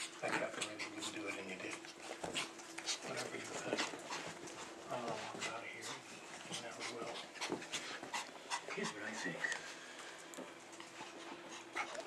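A dog and a puppy play-fighting: panting and scuffling, with many small clicks and scrapes throughout.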